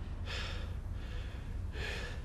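A person's breathing: two audible breaths, the first just after the start and the second near the end, over a steady low hum.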